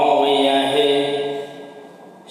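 A Buddhist monk's voice chanting, one long steady held tone that fades away near the end.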